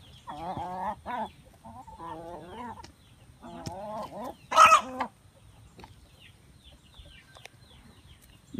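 A white domestic hen clucking while it feeds from a toddler's hand, with a louder call about halfway through and softer short clucks after it.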